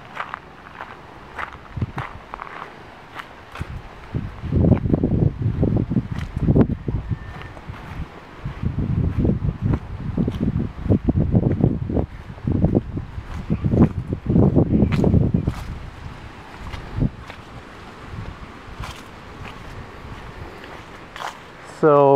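Footsteps on grass and gravel from someone walking with a handheld camera, with clusters of irregular low rumbling on the microphone between about four and fifteen seconds in.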